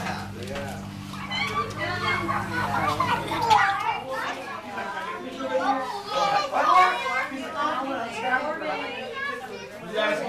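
Young children's voices, babbling and calling out as they play, mixed with adults talking. A steady low hum runs under the first few seconds and stops.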